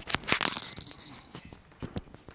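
Handling noise of a clip-on lapel microphone being unclipped and moved: rustling and scraping of cloth against the mic, with many small clicks, densest in the first second and a half.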